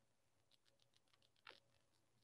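Near silence broken by a quick run of faint computer keyboard clicks, about ten in a second, ending in a slightly louder click.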